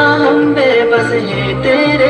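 Devotional Urdu/English nasheed playing loudly: a voice holding long, wavering sung notes over backing music with a recurring low bass.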